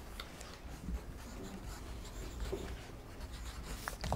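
Pencils writing on exercise-book paper: a quiet, scratchy rustle of graphite on paper with small taps.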